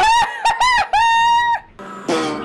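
A high, wavering, crowing-like cry from the film's soundtrack, in three stretches: two short arching ones, then a longer held one that cuts off about three-quarters of the way through.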